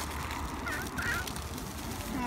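A toddler's two short, high-pitched squeals, one after the other, over a steady low rumble.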